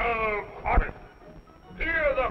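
Short, high-pitched cartoon voice cries, each sliding down in pitch, with a music score underneath.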